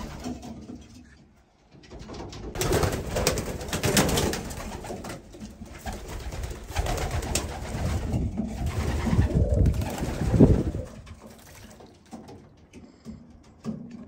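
Racing pigeons cooing in a loft, a busy low chorus from about two seconds in that fades off over the last few seconds.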